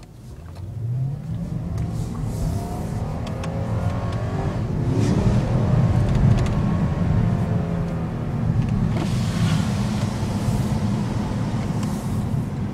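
Porsche Panamera S's 4.8-litre V8 accelerating, heard from inside the cabin: the engine note climbs in pitch over the first few seconds, then settles into a steady drone as the car cruises.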